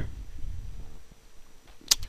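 Faint rustling and handling of a cardboard camcorder box being moved and set down on a bedspread, with one short sharp sound just before the end.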